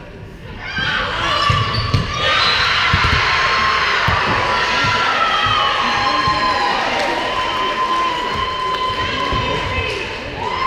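Volleyball players and spectators shouting and cheering in a gym hall, many high girls' voices overlapping and held, with a few thumps of the volleyball being hit and striking the floor in the first few seconds.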